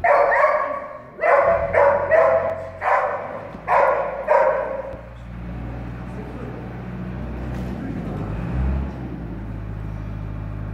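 A dog barking excitedly while running, with about seven loud barks in quick succession over the first five seconds, then it stops. A steady low rumble carries on underneath.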